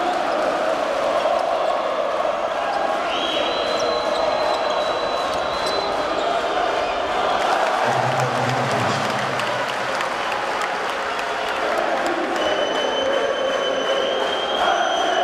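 Arena crowd noise during live basketball play, with a basketball bouncing on the hardwood court. Long high whistles sound over the crowd a few seconds in and again near the end.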